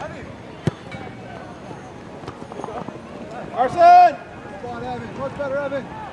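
Players and spectators shouting across a soccer field. One loud, drawn-out shout about four seconds in, with shorter calls after it, and a single sharp knock under a second in.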